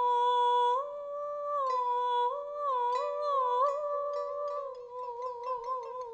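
A Kunju (Chinese opera) soprano sings long, high held notes, sliding between pitches and wavering on them. A pipa accompanies with scattered plucks. Near the end the pipa breaks into a rapid, even run of plucked strokes under a wavering held note.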